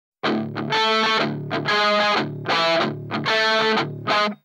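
Distorted electric guitar alone, playing a repeated chord riff: a short stab, then a held chord, about once a second, four times over.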